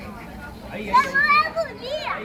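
A child's high-pitched voice calling out about halfway through, wavering and rising in pitch, over faint background chatter.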